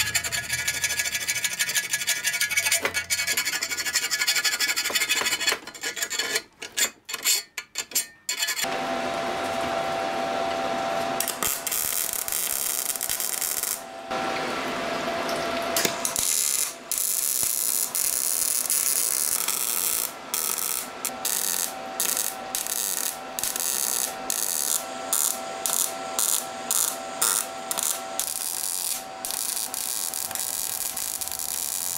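Electric arc welding on a steel exhaust manifold: a steady sizzling noise from about eight seconds in. In the second half it stops and restarts many times as seams are laid in short runs. Before that, metal parts clink and rattle as the piece is handled.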